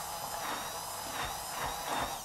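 Handheld immersion blender running steadily with a high whine, its blade churning oil and vinegar in a glass bowl as the vinaigrette emulsifies.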